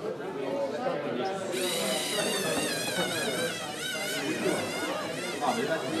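Lego Mindstorms NXT robot's electric motors whining, the pitch wavering up and down, starting about a second and a half in and dying away after about three seconds.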